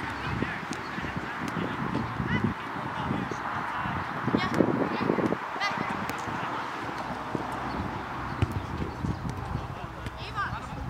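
Outdoor sports-field ambience: distant voices calling across the field, with a few sharp thuds of soccer balls being kicked over a steady background hiss.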